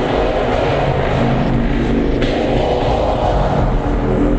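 Loud harsh-noise music: a dense, continuous distorted wash with some held tones underneath, its upper texture changing abruptly about two seconds in.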